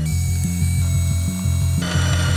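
Background music with a stepping bass line, over the steady whir of a LEGO electric motor turning a string reel that winds in the line and raises a hammer arm.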